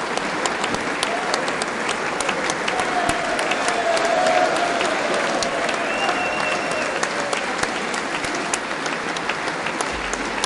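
A large audience giving a standing ovation: many hands clapping steadily at once, with a few voices calling out within the applause, swelling slightly about four seconds in.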